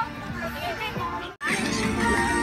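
People's voices chattering over background music. The sound drops out for an instant about one and a half seconds in.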